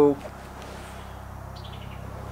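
Steady low background hum with a brief, faint bird trill of quick high chirps a little before the end.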